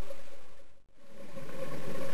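Muffled underwater camera sound with a steady hum over a low hiss. It fades out to a moment of silence just under a second in, then fades back up.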